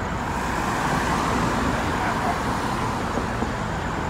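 Steady street traffic noise: cars on the road making a continuous rumble and hiss, with no distinct events.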